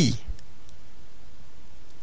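A voice ends the spoken French syllable "pi" right at the start, then a pause with only steady low background noise and a few faint clicks.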